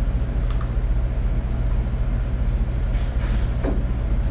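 Steady low hum of indoor room noise with no speech, and a faint click about half a second in.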